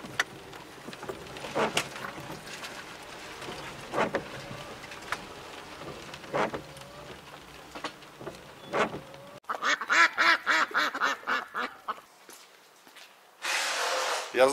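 Car windshield wipers on an intermittent setting, heard from inside the cabin: each sweep is a short squeak of rubber on glass, about every two and a half seconds. About nine seconds in the sound changes suddenly to a quick run of short pitched chirps lasting a couple of seconds.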